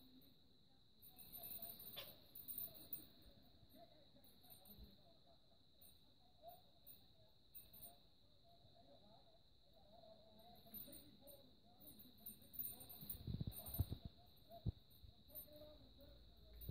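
Faint jingling of a small metal bell and light knocks from hanging cage toys as a green-cheeked conure plays on them, with a cluster of louder thumps about three-quarters of the way through. A faint steady high whine runs underneath.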